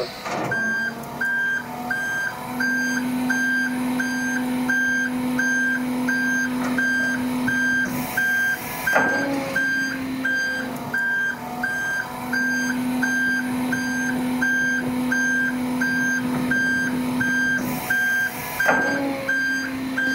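Hydraulic hook-lift (polybenne) arm on a utility trailer lowering its tipper body to the ground: a warning beeper sounds about twice a second over the steady low hum of the hydraulic pump, which briefly pauses and changes pitch a few times as the arm moves.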